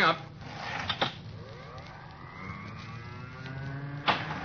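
Radio-drama sound effect of an elevator going up: a click about a second in, then a rising whine that climbs steadily in pitch.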